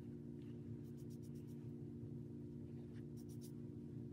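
Two quick runs of short, scratchy swishes from a makeup powder brush sweeping over the skin of the face, about a second in and again about three seconds in, over a steady low hum.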